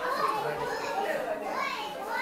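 Children's voices chattering and calling in overlapping high-pitched snatches of talk.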